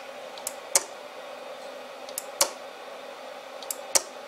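Homemade pulse motor built from microwave oven parts, turning slowly on 6 volts on its first spin-up: its micro switch clicks as the glass-plate flywheel comes round. Each time it is a light click followed a quarter second later by a sharper one, repeating about every 1.7 seconds.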